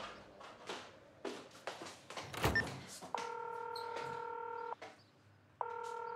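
A few light clicks and knocks, then a phone's ringback tone heard through the handset: one ring of about a second and a half beginning about three seconds in, and a second ring starting near the end.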